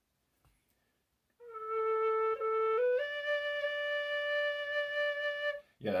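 Generation B-flat tin whistle, its tuning head pulled out to lengthen it, played softly. A low note near A sounds for about a second and a half, then the whistle steps up to a higher note near D that is held for about two and a half seconds. The pulled-out head lets this B-flat whistle play down at A pitch.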